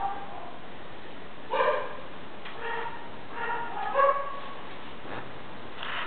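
A dog barking in short, separate barks and yips, the loudest about one and a half and four seconds in.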